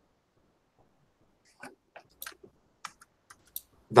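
Light, irregular computer clicks, about eight over two seconds, starting about a second and a half in after a quiet start.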